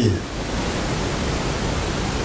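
Steady, even background hiss with no other sound over it.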